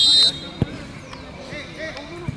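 A referee's whistle sounding one short, shrill blast that cuts off just after the start, followed about half a second later by a single thump.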